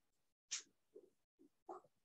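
Near silence: room tone, broken by a few faint, brief sounds, the clearest a short hiss about half a second in.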